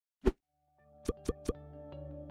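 Logo intro jingle: a single short pop, then a low held synth chord that swells in. Three quick percussive hits about a fifth of a second apart come near the middle, and steady notes follow.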